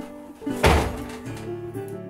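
A single heavy wooden thunk about half a second in, as a pallet-wood panel knocks against the pallet bed frame, over acoustic guitar music.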